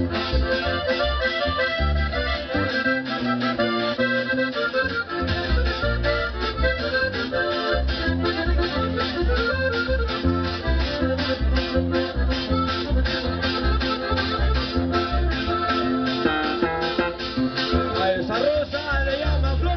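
Live band playing an instrumental passage with no singing: a lead melody over bass and drums keeping a steady beat.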